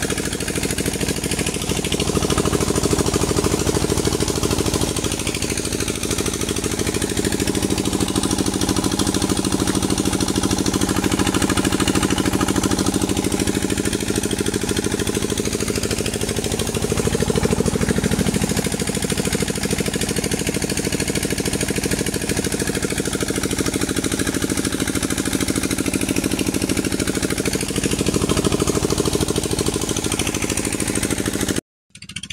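Irrigation pump engine running steadily with a fast, even chugging, with water rushing through the channel underneath.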